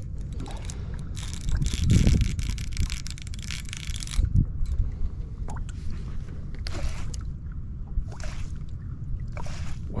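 Water sloshing around a boat with a steady low rumble, a long rushing noise between about one and a half and four seconds in, and several shorter ones near the end, while a baitcasting reel is worked against a heavy fish holding deep.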